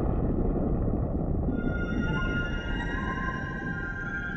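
Ambient soundtrack music: a low rumbling drone, joined about one and a half seconds in by several high tones held steady.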